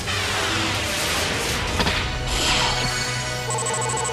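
Cartoon battle sound effects over background music: a long swooshing slash with a sharp hit partway through. Near the end comes a rapid pulsing electronic chime, the effect of a monster's attack points counting down.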